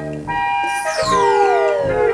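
Playful children's cartoon music: held notes changing in steps, with a sliding tone that falls steadily in pitch from about a second in, in time with the seesaw's swing.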